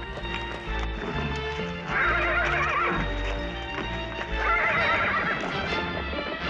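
A horse whinnying twice, about two seconds in and again near the end, each a long quavering call, over background music.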